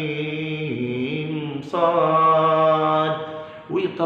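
A man's voice chanting Quranic recitation in a slow, drawn-out style. It comes in two long held phrases with a short break before halfway, and the first phrase steps down in pitch.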